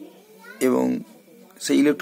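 A man's voice: a drawn-out vowel falling in pitch about half a second in, then the start of further speech near the end.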